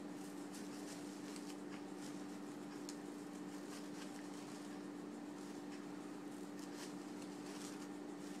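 Faint, scattered rustling and crinkling of wired fabric ribbon being pulled out and twisted by hand, over a steady low hum.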